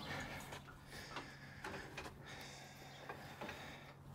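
Faint scattered clicks from a metal cattle squeeze chute as its squeeze is worked open by the lever, over a low steady hum.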